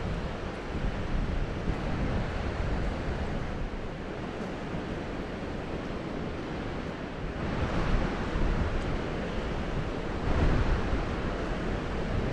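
Wind buffeting the microphone over the steady wash of surf on an open beach. There are two louder swells of rushing noise, one a little past halfway and one near the end.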